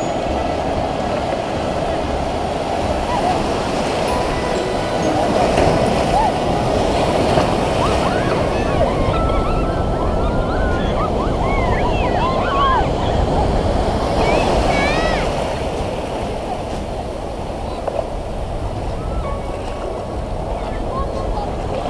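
Breaking surf washing through shallow water in a steady rush. Scattered shouts and cries of people in the water rise over it in the middle.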